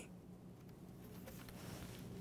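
Faint rustle of a hardcover picture book being opened and its pages handled, over a low steady room hum.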